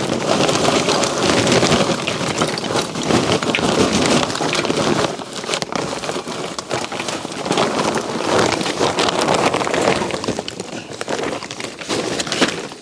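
Fogo Premium lump charcoal pouring from its bag into a Weber Ranch Kettle: a dense, rattling clatter of chunks tumbling onto the charcoal grate. The clatter eases briefly about five seconds in, picks up again, and tails away near the end.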